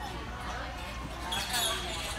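Voices talking in a large gymnastics gym, with dull thuds mixed in. The sound gets louder briefly about one and a half seconds in.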